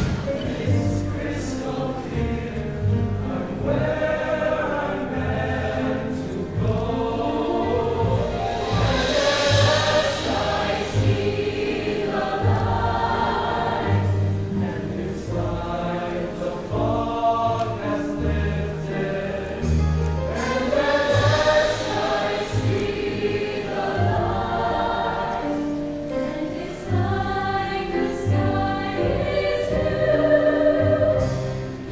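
Large mixed high-school choir singing in concert, with held low notes beneath the voices.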